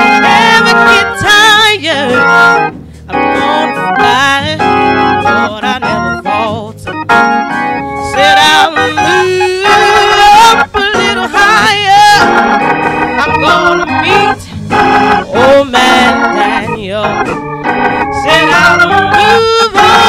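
A woman singing a slow gospel song with strong vibrato, to organ accompaniment.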